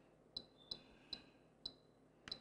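Four faint, short click-beeps from an RC transmitter's keys, about half a second apart, as the sub trim on channel six is stepped a notch at a time.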